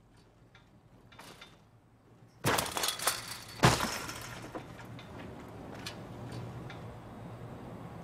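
Chain-link fence rattling and clattering as someone climbs over it, then a heavy landing on gravel about three and a half seconds in. A steady low electrical hum follows.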